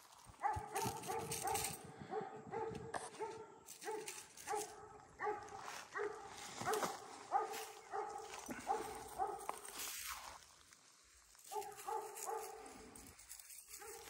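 Dog barking over and over, about two barks a second, breaking off for a second or so near the end and then starting again.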